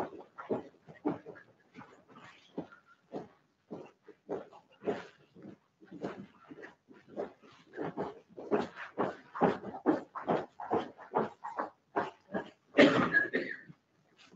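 Irregular footsteps and shuffling on a hard tiled floor as a group of people walks in and takes their places, with a louder clatter near the end.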